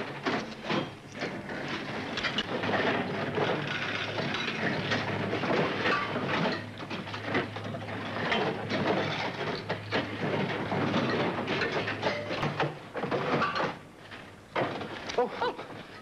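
A room of lever-operated poker machines in play: a continuous clatter of clicks and mechanical rattling over a low steady hum.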